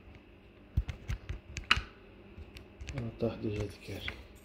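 Sharp clicks and taps of multimeter probe tips against the switch's metal pins and the circuit board, about half a dozen in quick succession in the first half.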